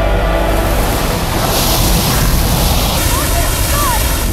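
Film sound of a towering ocean wave: a deep rumble with a loud rush of water that swells in the middle, and a short shout near the end.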